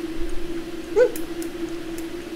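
A man humming a steady closed-mouth "mmm" while chewing a bite of chocolate-coated wafer ice cream bar, with a short rising squeak of the voice about a second in. Faint sharp mouth clicks from the chewing come through now and then.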